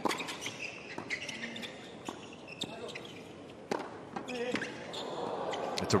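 Tennis rackets striking the ball in a fast doubles rally, sharp pops about once a second with a few ball bounces on the hard court. Crowd noise swells near the end as the point is won with a volley.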